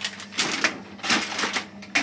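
Plastic-wrapped packs crinkling and household products clacking as they are set onto a shelf: a run of short, uneven rustles and knocks.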